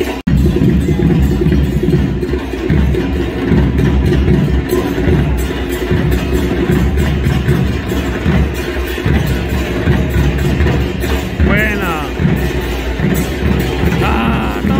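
Group singing to a drum beat, in the manner of a supporters' chant, continuous and loud, with a brief drop-out in the sound just after the start.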